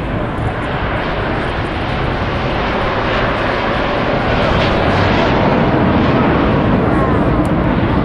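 Jet noise from the Red Arrows' formation of BAE Hawk T1 jets flying past, a steady rushing roar that swells louder from a few seconds in and holds.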